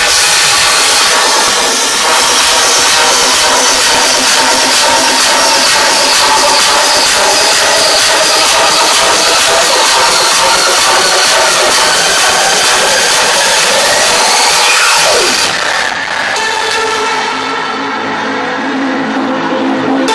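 Electronic dance music from a DJ set, played loud over a club sound system. About fifteen seconds in, a falling sweep leads into a breakdown: the treble fades out gradually and held chord tones carry on.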